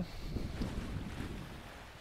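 Wind buffeting the microphone, with the rush of the sea past a sailboat under way in a 15 to 20 knot breeze, easing off a little toward the end.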